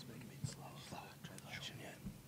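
Faint whispered speech away from the microphones, with a single soft knock about half a second in.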